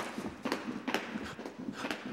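Jump ropes turning in Chinese wheel, slapping the floor as the jumpers land, in a steady beat of about two strikes a second.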